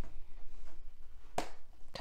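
A blade cutting the seal on a cardboard box, heard as one sharp click about a second and a half in.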